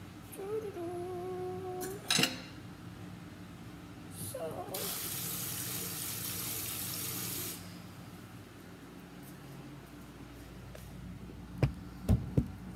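Kitchen tap running for about three seconds in the middle, a steady hiss of water. Before it there is a short steady hum and a sharp knock, and near the end two more sharp knocks.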